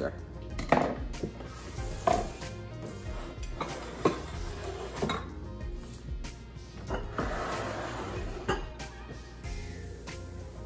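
Glass kitchen canisters and their glass lids clinking and knocking on a countertop while sugar is put away: about half a dozen sharp knocks a second or two apart, with a stretch of rustling about seven seconds in. Quiet background music underneath.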